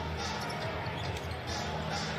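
Live basketball arena ambience from a broadcast: a steady crowd murmur with a low hum under it, as play is being set up.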